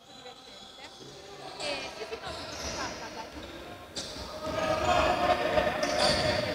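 Sounds of play on an indoor basketball court: the ball bouncing on the wooden floor, with players' voices calling out in the echoing hall. The sound grows louder over the last two seconds.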